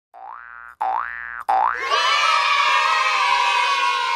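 Channel-logo sound effects: three quick cartoon 'boing' swoops rising in pitch, each about half a second, then a bright held chord that sinks a little in pitch.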